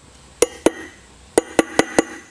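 Light hammer taps on the edge of a steel bearing race (cup) as it is driven into a trailer wheel hub: six sharp taps, two and then four in quicker succession.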